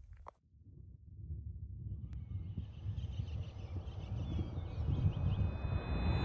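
A low rumbling swell that builds steadily in loudness over several seconds, with faint high chirps above it and steady high tones coming in near the end: the rising intro sound of a video outro.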